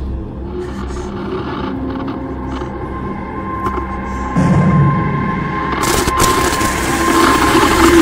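Horror film soundtrack: an eerie, droning score with a steady high tone entering partway through. It swells louder in the second half as a wash of noise builds.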